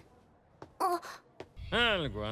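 A short spoken word, then near the end a loud wailing voice begins, its pitch swooping down and wavering up and down.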